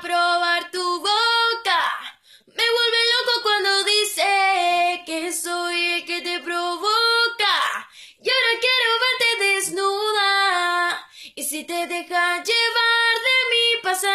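A young woman singing a solo melody, with brief pauses about two and eight seconds in.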